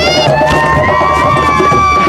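Several high voices cheering with long, held cries over background music.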